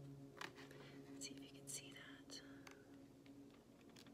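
Near silence over a steady low hum, with a few faint clicks and rustles in the first three seconds as an oracle card is handled and set down on a wooden table.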